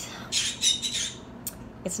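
Pet parrot squawking, a quick run of shrill calls in the first second, followed by a short sharp click.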